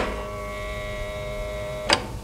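A sharp click, then a steady electronic hum of several held tones lasting nearly two seconds and ending in a second click: a sound effect of a wall projection screen being switched on.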